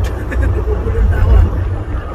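Steady low rumble inside a semi-truck's cab, with a man's voice speaking softly over it.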